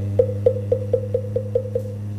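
Moktak (Korean Buddhist wooden fish) struck in a quickening roll of short knocks, about four to five a second, over a steady low note held by the chanting voice. This marks the close of a chanted verse in the Buddhist liturgy.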